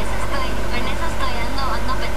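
A woman talking, over a steady low hum.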